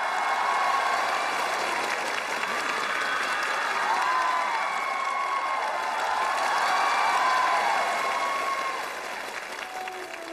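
Studio audience applauding and cheering, with high shouts rising and falling over the clapping. It fades down near the end.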